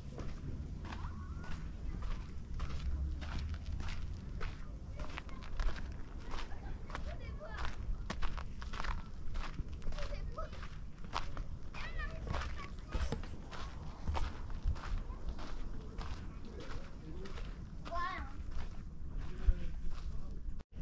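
Footsteps of a person walking at a steady pace on a sandy dirt path, with faint voices of other people heard now and then.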